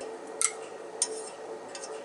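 Two light clicks of chopsticks or a pan against ceramic dishes, about half a second apart, over a faint steady hum.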